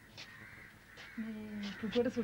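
A crow cawing faintly, three short caws about a second apart, with a voice starting a little over a second in.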